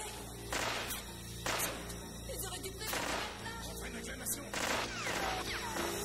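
Film soundtrack: five loud gunshots at irregular intervals, echoing, over a low steady music score.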